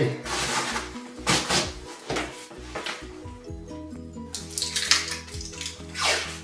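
Export wrap, a thick bubble-wrap-like plastic packing sheet, rustling and crinkling in several short bursts as it is opened and folded over a large picture, with background music playing under it.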